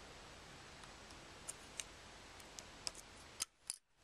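Light, sharp clicks of metal tweezers and a small plastic gear against a clear plastic timer gearbox, about half a dozen spread over the second half, over a steady low hiss. The sound drops out briefly twice near the end.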